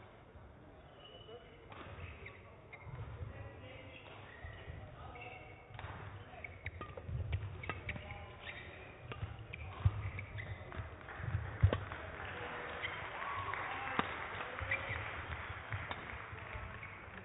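Badminton rally in a sports hall: a series of sharp racket strikes on the shuttlecock from about six seconds in, over thudding footwork and shoe squeaks on the court floor. Background voices murmur through the hall.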